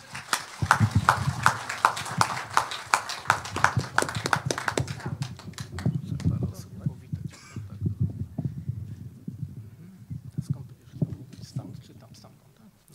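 Audience applauding: dense clapping for about five seconds that then thins to scattered claps, with a low murmur of voices underneath.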